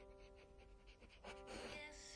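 Quiet background music with held notes, over an Alaskan Malamute panting with quick, even breaths.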